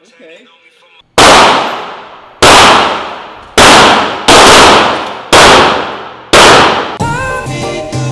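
Six loud gunshots at uneven spacing, roughly a second apart, each fading out with a long ringing tail. Music comes in near the end.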